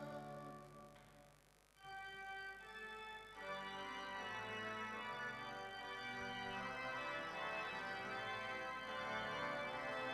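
Church organ playing slow, sustained chords. The choir's last sung chord dies away over the first second and a half, then the organ comes in at about two seconds and grows fuller from about three and a half seconds.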